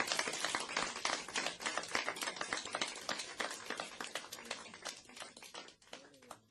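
Audience applauding, the clapping thinning out and dying away over the few seconds.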